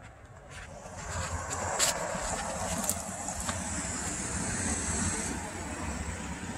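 Road traffic noise, a steady rushing that builds about a second in and eases near the end, with a couple of faint clicks.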